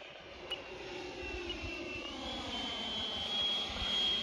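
HSD L-39 electric ducted-fan model jet flying past: a rushing fan whine whose pitch dips slightly, then steps up about two seconds in, growing louder toward the end.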